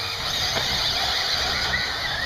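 1/8-scale radio-controlled racing buggies running on a dirt track, a high-pitched whine with a pitch that rises near the end.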